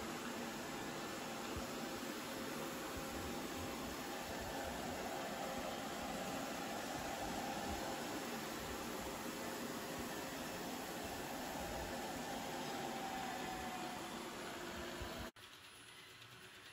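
ILIFE V5s Pro robot vacuum running on a tile floor: a steady, fairly quiet whir of its suction fan with a faint steady hum. It cuts off suddenly near the end.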